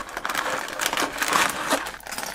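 A cardboard LEGO set box being forced open by hand, with dense crackling and tearing of the cardboard and rustling of the packaging.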